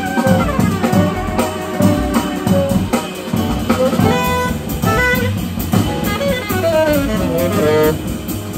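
Live small-group jazz: a tenor saxophone plays a moving melodic line over upright bass, piano and drums.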